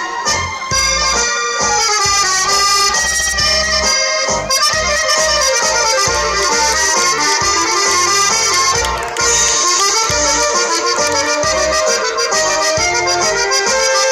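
Accordion dance music in mazurka style, a lively tune with a steady beat, briefly dipping about nine seconds in before carrying on.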